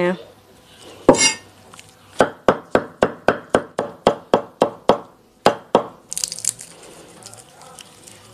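Cleaver chopping straw mushrooms on a thick round wooden chopping block: a quick, even run of knocks, about four a second for some three seconds, then two more.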